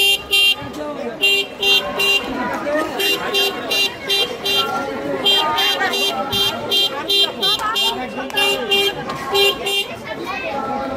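An electronic vehicle horn beeping over and over in short bursts of two to four beeps, about three a second, with the bursts repeating every second or so, over the talk of people in a crowded street.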